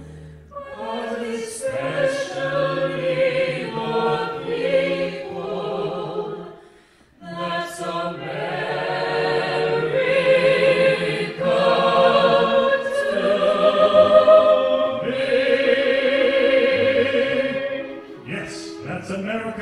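Four singers, men and women, singing a patriotic song together in harmony with a pops orchestra accompanying, in two long phrases with a brief break about seven seconds in.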